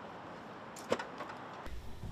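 Faint outdoor street ambience, a steady low hiss with a short knock about a second in. Near the end it gives way to a low indoor room hum.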